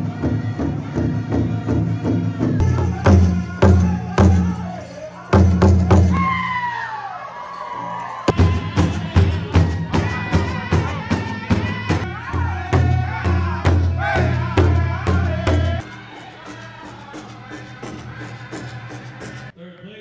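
Powwow drum group: a big drum struck in a steady, even beat with high singing voices over it, their phrases sliding downward. The drumming stops about 16 seconds in and the sound drops to a quieter background.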